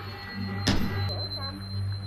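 A steady low electrical-sounding hum, with a single sharp click about two-thirds of a second in.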